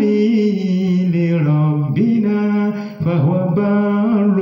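A single unaccompanied voice chanting a devotional poem in long, held, melismatic notes that slide slowly in pitch, with short breaths about two and three seconds in.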